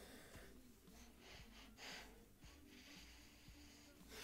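Faint sniffing and breathing through the nose: about four short sniffs as a glass of whisky is nosed, the strongest near the middle.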